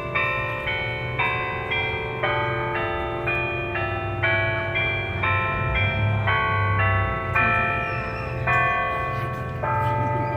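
Church bells chiming a tune from the tower, one note after another about two strikes a second, each note ringing on under the next; the strikes come a little slower near the end.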